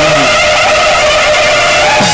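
Loud amplified singing of a devotional refrain: many voices hold one long, wavering note together over a rushing crowd noise.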